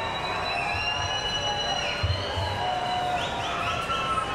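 Live electronic music played over a festival PA: sustained synthesizer tones with short rising synth figures near the end, and a few low drum thumps about two seconds in.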